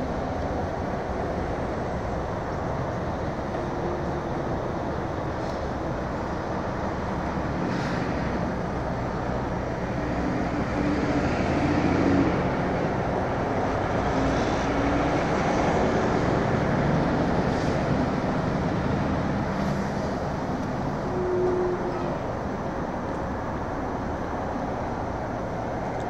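Steady rumble of road vehicle noise, swelling a little near the middle.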